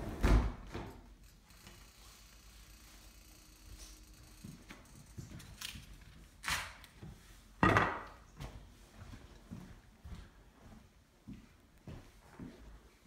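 A few sharp knocks and thumps, with quieter clicks between. The loudest comes just after the start and another about two-thirds of the way through, that one followed by a short ringing tail.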